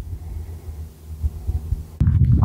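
Low, uneven rumbling noise on the microphone, with a few soft thumps.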